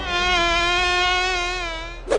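Cartoon sound effect of a fly buzzing: one steady, slightly wavering buzz that eases off a little near the end.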